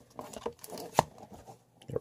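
Trading card blaster packaging being torn open by hand: a run of crackling rips with one sharp tear about a second in.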